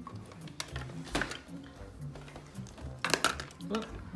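Hard plastic toys clattering and knocking together as a child rummages through a crowded toy bin: a few scattered knocks, then a louder cluster of clacks about three seconds in.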